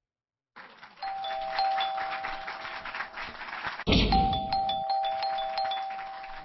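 A two-note ding-dong chime, high note then low, sounding twice over a busy noisy background, with a sudden loud low hit just before the second chime about four seconds in.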